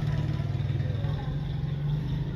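Steady low mechanical hum, like a motor or engine running.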